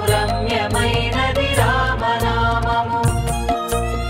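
Telugu devotional song in praise of Rama: a winding melody over a steady drum beat, giving way to held instrumental notes about three seconds in.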